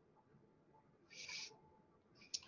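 Near silence: a pause in the lecture, with one brief faint hiss a little past the middle.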